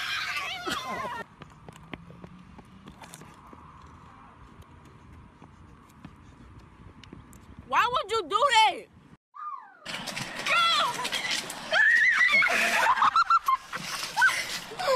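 Human voices shouting and shrieking, with a quiet stretch of faint outdoor background noise in the middle. About eight seconds in comes a short burst of a wavering, high voice, then a brief gap, and from about ten seconds on loud, continuous high-pitched shrieks and laughter.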